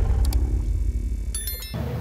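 Intro-animation sound effects: a low rumble fading away, with a short bright chime near the end.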